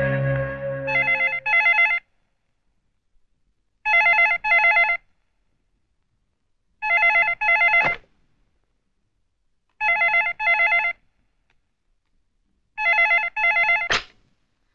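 Desk telephone ringing with a warbling electronic tone in double rings, five pairs about three seconds apart, as background music fades out at the start. A short sharp click comes about eight seconds in.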